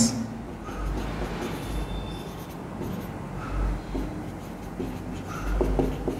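Marker pen writing on a whiteboard: faint scratchy strokes as letters are written, with a few soft low bumps.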